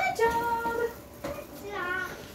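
A young child's high sing-song voice holding long, drawn-out notes: one lasts most of a second near the start and a shorter one comes near the end.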